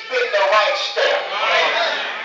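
A preacher's voice raised to a shout over a microphone, loud and strained, the pitch bending.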